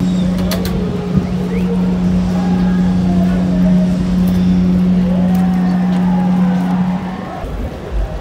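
Carnival Magic cruise ship's horn sounding one long, steady low blast that stops about seven seconds in.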